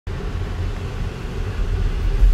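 Car interior noise while driving: a steady low rumble of engine and road, heard from inside the cabin.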